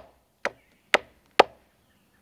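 Machete blade chopping into the end of a wooden stick held at an angle against a log, three sharp strikes about half a second apart, shaping the stick's end into a point.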